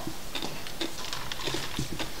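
A few light clicks and taps of plastic drinking cups being handled and set down on a table.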